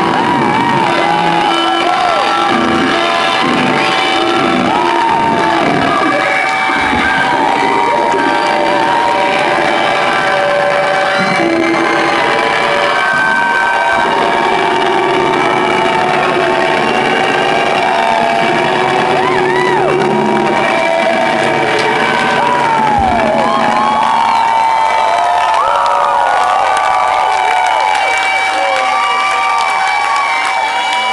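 Live rock band ending a song, with held electric guitar tones, while the audience shouts and whoops close to the microphone. About three-quarters of the way through the band's low end drops away, leaving mostly the crowd cheering.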